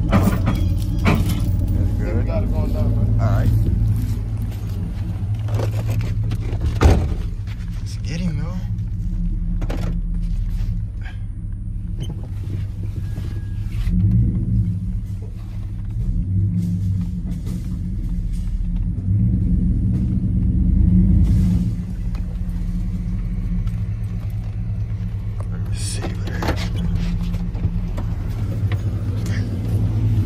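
Truck engine running, heard from inside the cab, rising in level twice in the middle as it is revved to pull something out with a chain. There is a single sharp knock early on.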